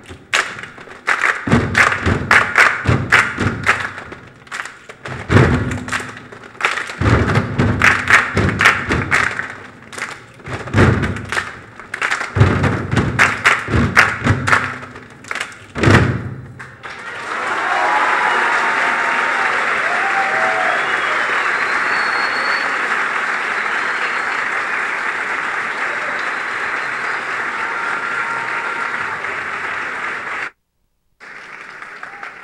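A children's choir's feet stomping on a wooden stage floor in a rhythmic body-percussion routine, loud sharp hits in quick groups. About 17 seconds in they stop suddenly and steady audience applause follows.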